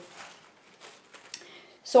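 Faint rustling and crinkling of a thin paper serviette being handled, with a few short crisp crackles.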